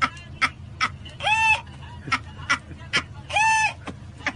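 A man laughing uncontrollably in a high, squeaky, rooster-like way: a run of short sharp yelps, two or three a second, broken by two long crowing cries, about a second in and again near the end.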